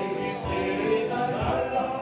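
Live music from an electronic arranger keyboard with a steady beat, with voices singing along.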